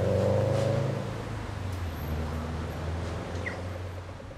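Car engine in street traffic, a low note that rises slightly in pitch over the first second, then fades gradually.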